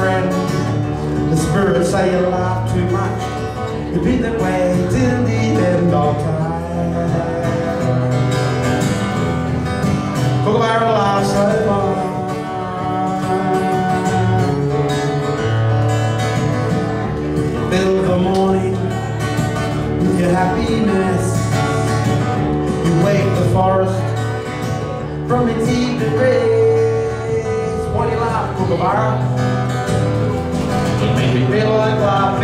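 Acoustic guitar playing an instrumental passage of a song, with a steady chord pattern.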